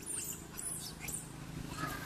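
Juvenile long-tailed macaques squeaking: several short, very high squeaks in the first second or so, each sliding up or down in pitch, then a lower chirp near the end.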